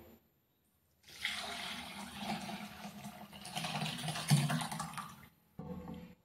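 Curdled milk, whey with chhena curds, poured from a bowl into a cotton cloth over a large vessel. The liquid splashes and runs through the cloth, starting about a second in and stopping shortly before the end.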